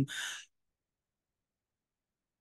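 A man's short, breathy exhalation just after finishing a sentence, lasting about half a second, then complete silence.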